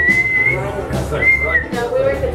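A person whistling two high, steady notes, the first held about half a second and the second shorter, over laughter.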